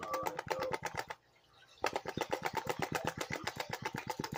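Rapid tapping with the hand on the rim of a water-filled plastic gold pan, about nine taps a second in two runs with a short pause about a second in. The tapping settles the heavy material so the gold climbs to the top of the black sands concentrate.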